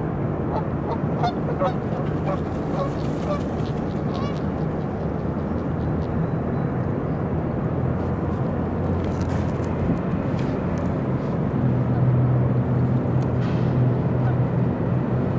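Canada geese honking, a quick run of short calls over the first four seconds or so, above a steady low drone that grows louder near the end.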